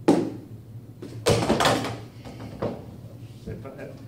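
Objects being handled on a lab bench: a sharp knock, then a loud rustling scrape lasting about half a second, another knock and a few light clicks near the end.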